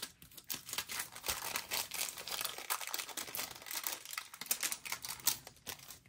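A sheet of wax paper crinkling and crackling as it is rubbed flat over a paper planner page and then pulled away from it.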